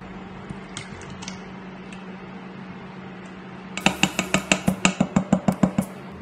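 Rapid, regular clinking of kitchenware, about seven sharp strokes a second, starting a little before two-thirds of the way in, over a steady low hum.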